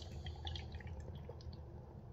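A man drinking from an aluminium can: faint liquid sounds with small clicks of sipping and swallowing, over a low steady hum.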